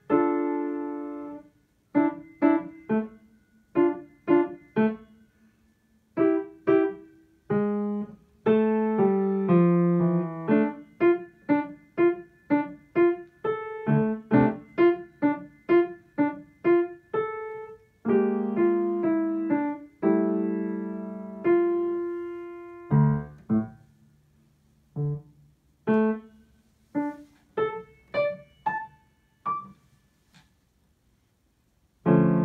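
A grand piano played by a young child: a simple melody of separate notes with a few held chords, broken by brief pauses.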